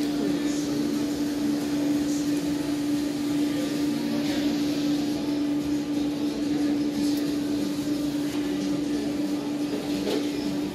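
A steady machine hum holding one low pitch, over a background of faint indistinct voices.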